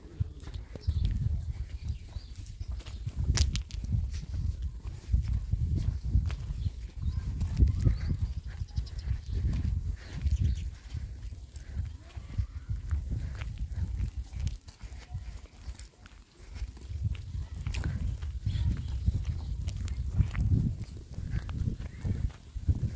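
Wind buffeting the microphone in an uneven low rumble, with footsteps crunching on a stony dirt road as people walk.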